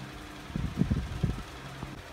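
Steady low mechanical hum with a few soft low thumps around the middle.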